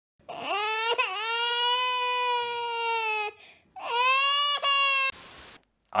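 A voice wailing in two long cries held on one steady pitch, the first about three seconds long and the second shorter, like a baby crying. A short burst of hiss follows.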